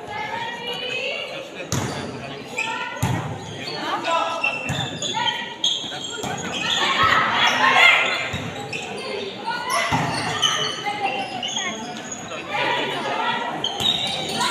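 A volleyball being struck during a rally: a series of sharp hand-on-ball hits a second or more apart, echoing in a large gym hall. Players and spectators shout throughout, loudest about halfway through.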